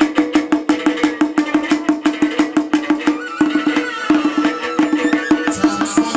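Live chầu văn ritual music: wooden clappers clicking fast and evenly, about five or six a second, over a repeating plucked-string line.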